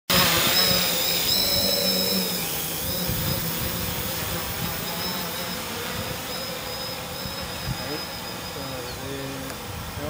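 Octocopter's eight electric motors and propellers running with a steady whine, loudest at first and fading as the craft climbs away.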